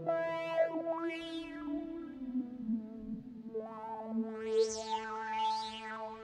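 Native Instruments Low End Modular software synthesizer, on its 'Broken-Bass Lead' preset, playing a few held notes rich in overtones. Gliding sweeps run through them: a falling sweep about half a second in, and rising-and-falling sweeps high up near the end.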